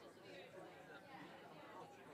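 Faint, indistinct chatter of many people talking at once, overlapping voices with no single voice standing out.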